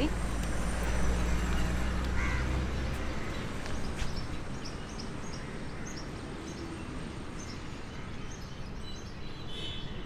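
Outdoor background sound: a low, steady hum that stops about three seconds in, a single sharp click about a second later, then faint, short, high chirps of small birds.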